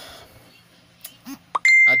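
A single bright, bell-like ding, about one and a half seconds in, that rings on one steady pitch and fades over about a second, after a few faint clicks.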